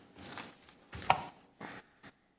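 A few short clicks and knocks with gaps between them, the sharpest and loudest about a second in.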